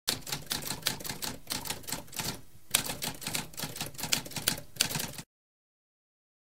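Typewriter typing: a fast run of keystroke clacks, several a second, with a brief pause near the middle, stopping suddenly about five seconds in.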